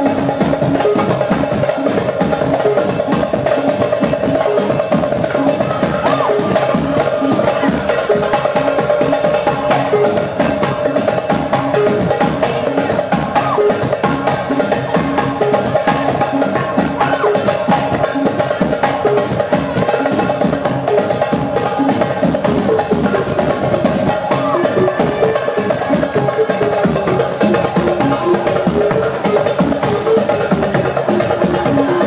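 Live band music driven by a darbuka (goblet drum) struck by hand in a fast, dense rhythm, backed by a drum kit, under held melodic notes and a wavering melody line near the end.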